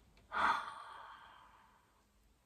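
A woman's nervous sigh, breathed out through the gloved hand held over her mouth. It starts suddenly about a third of a second in and trails off over about a second and a half.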